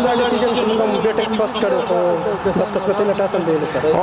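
A man's voice speaking into a handheld microphone, giving his answer in speech that the recogniser did not write down.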